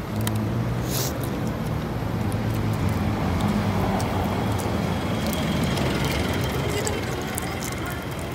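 A motor vehicle's engine running close by, a steady low hum over street traffic noise.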